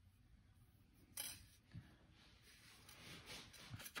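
Near silence, broken by a faint short tick about a second in and a smaller one just after, with soft rubbing near the end: copper jewellery wire handled by hand and set down on a stone work surface.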